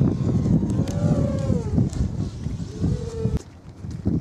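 Wind buffeting the microphone, with the faint whine of a small Eachine Blade FPV quadcopter's motors rising and falling in pitch twice as it flies. The rumble drops away near the end.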